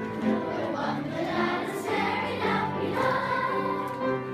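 Children's choir singing together over a musical accompaniment, with notes held and changing in a steady melody.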